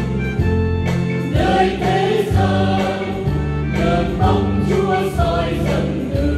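Church choir singing a Vietnamese Catholic hymn in parts, the voices moving through a steady metered melody over sustained low notes.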